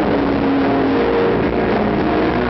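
Live dream-pop band music heard from the audience: a loud, dense wash of held notes that runs on without a break.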